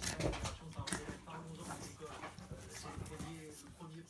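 A German Shepherd and a small dog play-fighting on a sofa, with repeated short vocal sounds and the scuffling of paws on the fabric cover.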